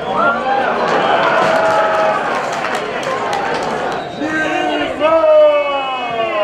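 Shouting voices at a football match over a haze of stadium crowd noise. A loud, drawn-out shout falls in pitch about five seconds in.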